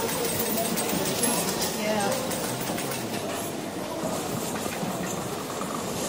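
Casino floor ambience: a steady hubbub of many people talking indistinctly, with scattered short electronic tones and jingles from slot machines.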